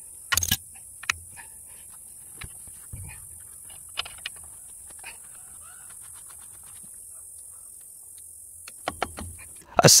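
Scattered light metal clicks and taps of hand tools on a steam locomotive's valve gear, as a nut is unscrewed from an eccentric blade pin held with vise grips. The sharpest click comes about half a second in, over a steady faint hiss.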